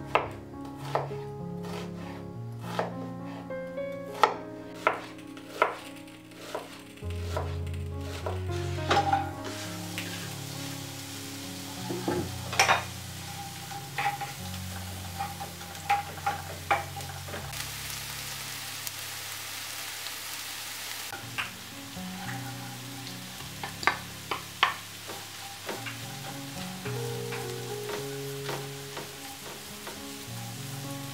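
Knife chopping onion on a wooden cutting board, a sharp stroke about every 0.7 s, stops about nine seconds in. Diced onion then sizzles in hot oil in a frying pan, with the scrape and tap of a wooden spatula stirring it; the sizzle grows louder for a few seconds midway.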